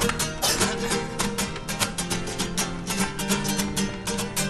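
A carnival murga's live music: acoustic guitar strummed to a brisk, steady rhythmic beat in an instrumental stretch with little singing.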